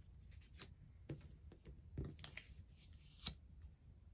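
Game cards being drawn from a pile and laid down on a tabletop: a few soft slaps and slides, the sharpest about three seconds in.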